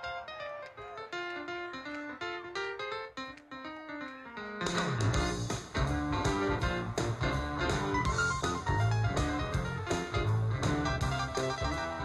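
A blues band playing live. A lone instrument plays an unaccompanied run of single notes, and about four and a half seconds in the drums, bass and keyboard come in together on a steady beat.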